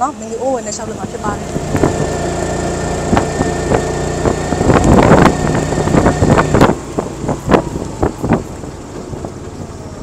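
A tuk tuk's small engine running as it drives along a road, heard from inside the open cab, growing louder and rougher in the middle and easing off after about seven seconds, with a few short knocks near the end.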